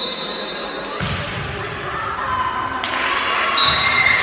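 Referee's whistle blowing for the serve, then a volleyball struck with a thump about a second in. Voices in the hall grow louder from about three seconds in, and a second short whistle sounds at the end as the rally stops.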